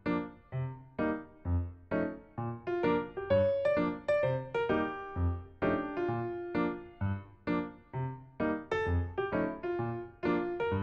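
Background music: a light keyboard tune with a piano-like sound, notes struck about twice a second and each fading away, over a bass line.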